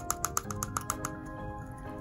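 Light clicks and ticks as a small jar of metallic pigment powder is tipped and tapped over a plastic cup: a quick run of them in the first second, fewer after. Soft background music with held notes runs underneath.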